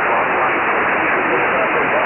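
Kenwood HF transceiver's receiver audio on 20-metre upper sideband: a steady hiss of band noise with a very weak station's voice barely showing through it.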